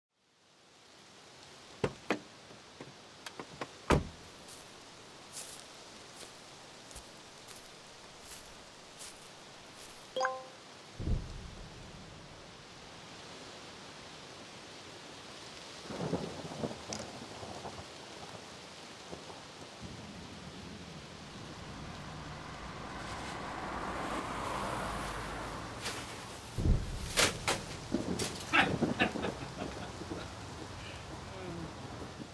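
Rain falling, with thunder, fading in from silence. Scattered sharp cracks and a deep thump give way to a swelling rumble, and a cluster of loud sharp hits comes near the end.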